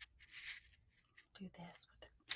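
Faint whispering, in two short breathy bursts.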